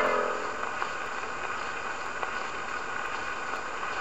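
The last note of the record dies away within the first second, leaving the steady surface hiss and crackle of a 78 rpm picture disc played on a portable acoustic gramophone, with a few faint clicks.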